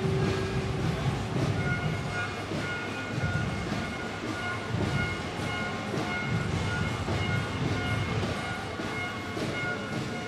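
Steady low rumble of a street parade, with the float's towing vehicle moving along and faint music in the background.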